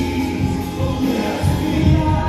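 Live contemporary worship band playing: voices singing together over acoustic guitar, bass, keyboard and drums, with a strong, pulsing bass.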